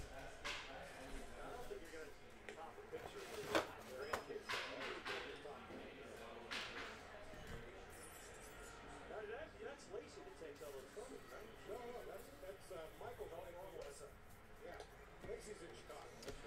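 Stack of trading cards being handled and flipped through by hand: quiet rustles and a few short snaps, the loudest about three and a half seconds in.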